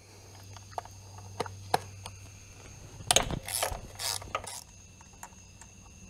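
Quarter-inch-drive ratchet with a 10 mm socket clicking as a bolt is backed out. A few scattered clicks come first, then a run of louder ratcheting strokes about three seconds in, over a faint steady hum.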